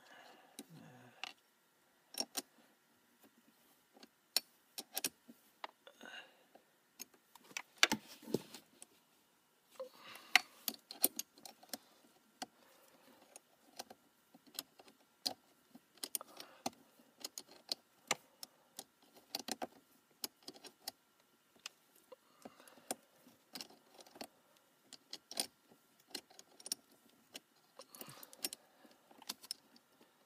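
Small metal parts clinking and clicking in irregular sharp taps, some with a brief ring: battery-charger pigtail ring terminals, a washer and a wrench being handled and fitted at a car battery's terminal post.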